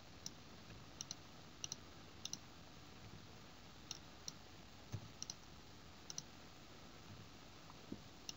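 Faint, sparse clicks from a computer mouse and keyboard, several in quick pairs, over a low steady hiss.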